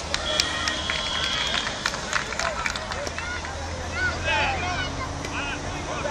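High-pitched voices of young players and spectators calling and shouting on an outdoor football pitch, over a murmur of chatter. A short steady high tone runs for about a second early on, and a few sharp knocks are scattered through.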